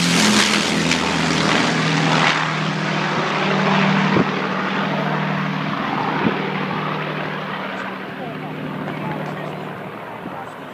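Avro Lancaster bomber's four Rolls-Royce Merlin engines droning as it passes overhead and flies away, dropping slightly in pitch as it passes. The drone fades steadily and grows duller as the plane recedes.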